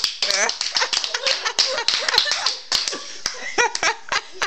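Scattered sharp hand claps among high-pitched voices and vocalising.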